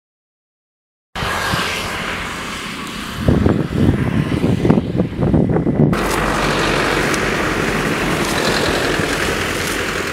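Wind buffeting the microphone, starting about a second in and gusting harder in low rumbling bursts for a few seconds. An abrupt cut about six seconds in gives way to a steady rushing noise.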